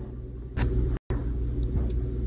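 A steady low rumble, with a short noisy scrape about half a second in and a split-second cut to silence at about one second. Near the end come faint strokes of a mechanical pencil's lead on paper.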